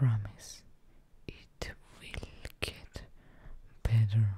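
A woman whispering close to the microphone, her words broken by several short, sharp clicks.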